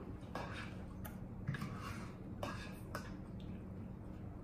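Faint sounds of eating at a table: a handful of soft, scattered clicks of forks against plates.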